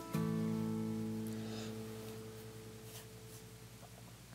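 A guitar chord struck just after the start, ringing and slowly fading away, heard in the background, with a few faint clicks.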